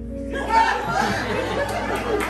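Background music with sustained, steady notes, joined about half a second in by voices talking over it.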